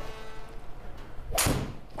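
A golf shot in an indoor simulator: the club strikes the ball and it hits the screen almost at once, heard as one sharp crack with a short ring-out about one and a half seconds in.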